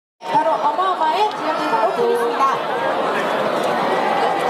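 Several voices chattering over one another, some of them high-pitched, at a steady level.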